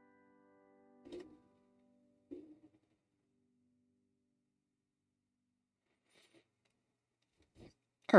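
Quiet closing piano notes ringing out and fading, with two soft notes struck about one and two seconds in, then near silence.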